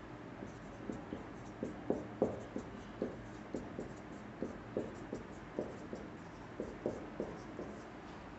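Marker pen writing on a whiteboard: a quick, irregular run of short strokes and taps as symbols are written out.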